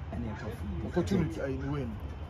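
A man's voice: drawn-out exclamations whose pitch rises and falls, over a low steady background rumble.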